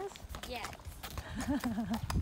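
Horse's hooves clip-clopping at a walk on an asphalt road, a scatter of sharp ticks.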